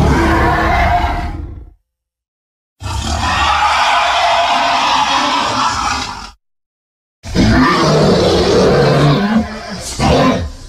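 Designed Tyrannosaurus rex roar sound effects: three long, loud roars separated by dead silence. The first is already under way and dies away just under two seconds in. The second lasts about three and a half seconds. The third starts about seven seconds in and is still going at the end.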